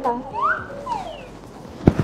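A comic whistle sound effect that slides up in pitch and then falls back down, followed near the end by a short, low thump.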